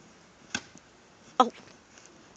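Mostly quiet, with one sharp click about half a second in and a brief exclaimed "Oh" a little later.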